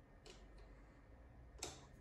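Near silence: quiet room tone with two faint clicks, one shortly after the start and one near the end.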